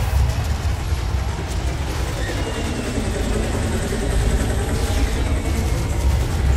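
Live concert audio from an arena sound system: a deep, steady low rumble under a dense noisy wash, as the song's intro builds before the singing starts.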